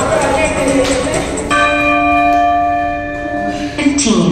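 Workout music plays and stops, and a single bell chime rings about a second and a half in, holding for about two seconds before fading: the timer bell marking the end of an exercise round and the start of the rest break.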